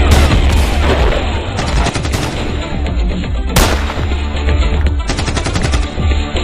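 Several pistol gunshots a second or two apart, the sharpest about halfway through, over background music with a heavy steady bass.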